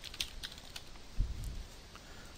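Computer keyboard typing: a few separate keystrokes in the first second, then a low thump about a second in.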